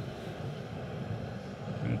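Canister backpacking stove burner running steadily under a kettle of water, a low, even rushing noise.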